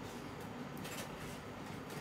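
Scissors cutting through a printed edible icing sheet: faint snipping.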